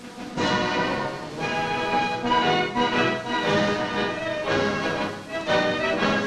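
Band music with held, sustained notes that change every second or so, in an orchestral style.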